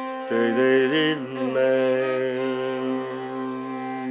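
Carnatic music in raga Shuddha Dhanyasi. Just after the start a melodic line enters over a steady drone, first with quickly wavering, ornamented notes and then with held notes.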